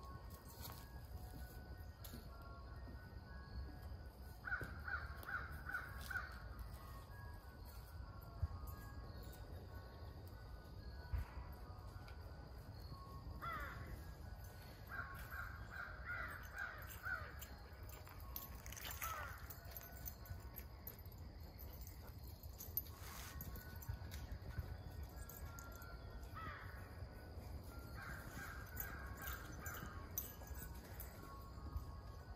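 Crows cawing in several short series of calls over a steady low rumble.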